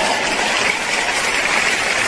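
Audience applause that swells up after a line of the sermon and holds steady.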